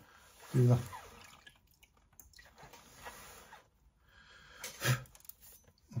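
Small, fairly dry sponge rubbing over an agateware mug at the handle joint as the join is blended smooth: a soft, scratchy wiping rustle lasting about three and a half seconds.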